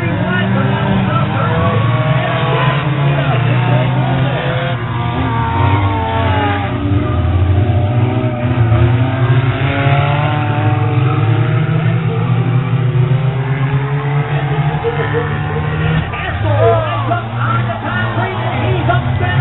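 Several figure-8 stock race cars' engines running and revving as they lap the track, their pitch rising and falling as they pass, with voices mixed in.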